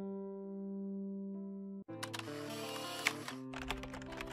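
Background music: a held chord stops just under two seconds in, then a new musical phrase starts with sharp clicking sounds over it.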